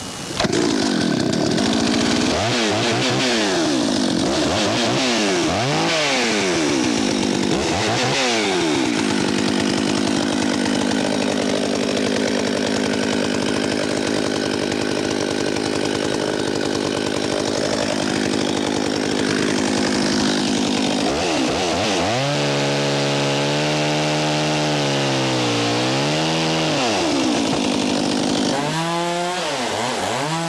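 Two-stroke chainsaw revved up sharply about half a second in, then blipped up and down several times before running at high speed for long stretches, its pitch dipping and recovering as it cuts dead white pine limbs.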